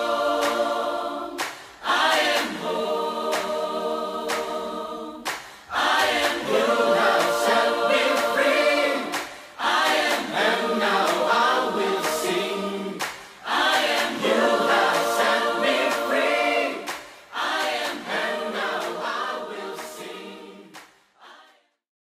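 Choir singing unaccompanied in long held phrases of about three to four seconds, each followed by a short break, fading out near the end.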